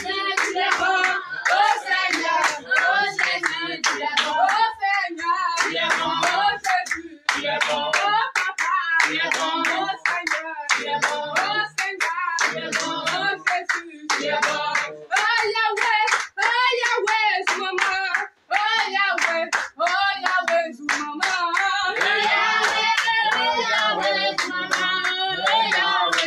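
A congregation singing a praise song together with steady, rhythmic hand clapping, mixed male, female and children's voices.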